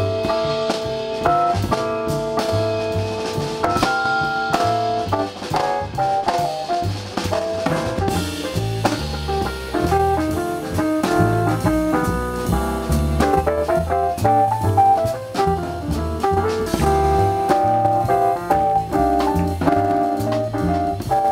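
Jazz piano solo played on a Korg X5D keyboard, with upright bass and a drum kit keeping time underneath.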